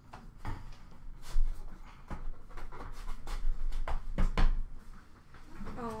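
Trading cards and card packaging being handled and set down on a counter: a series of light knocks, clicks and rustles, with no steady rhythm.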